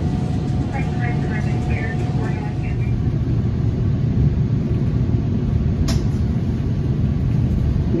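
Steady low rumble inside a moving Metra Electric double-deck electric train, from the wheels on the rails and the running gear. A thin, faint whine fades out about three seconds in, and a single sharp click comes near six seconds.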